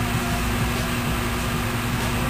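A steady low hum with an even hiss and one constant low tone; nothing starts or stops.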